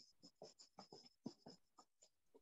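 Near silence on a video-call line: faint room hiss with a run of soft, irregular ticks, about five a second.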